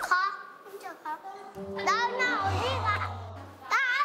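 Young children's voices, a boy speaking and then shouting, over background music.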